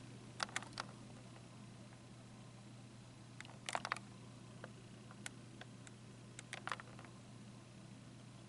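Quiet room tone with a steady low hum, broken by a few small, faint clicks: a couple about half a second in, a cluster a little before the middle, a single one later, and another pair near the end.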